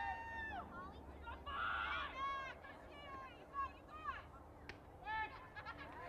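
Faint, high-pitched voices of softball players calling out and chanting from the field and dugout, in a string of short, drawn-out calls.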